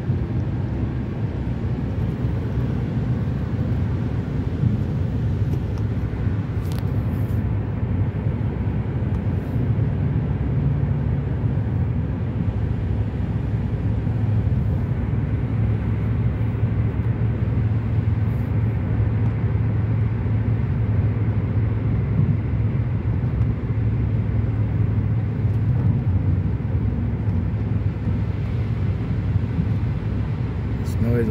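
Steady driving noise inside a moving car's cabin: engine hum and tyres on wet pavement, a low drone that grows slightly stronger about halfway through.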